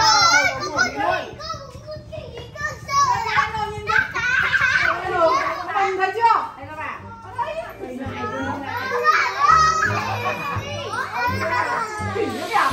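Young children's voices, talking and exclaiming excitedly, mixed with adult speech, over background music.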